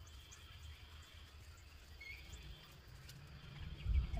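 Quiet outdoor background with a steady low rumble and faint rustling and ticking from the leaves and stems of a potted rose bush being handled, ending with a low thump.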